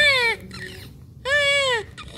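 Preterm newborn crying in short cries, each rising then falling in pitch: one at the start and another about a second and a quarter in.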